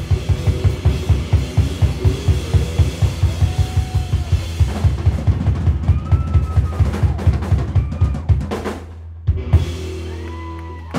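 Live rock band led by a drum kit playing a fast, driving beat of about six hits a second, with pounding bass drum and snare. The drumming stops about eight and a half seconds in, one more hit comes about a second later, and a low bass note rings on as the song ends.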